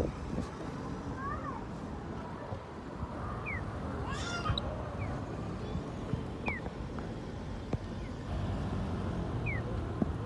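Short, high descending electronic chirps repeating about every second and a half, typical of a Japanese pedestrian crossing's audible walk signal, over steady street traffic.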